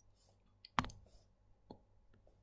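One sharp click about a second in, then a fainter tick near the end, both quiet: the click of selecting a pen tool in a digital notebook, as the green highlighter is picked.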